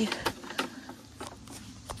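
Footsteps and scattered snaps and knocks of twigs and debris underfoot as someone clambers over a fallen tree across a shallow creek: a few short, irregular clicks and knocks over a low rustle.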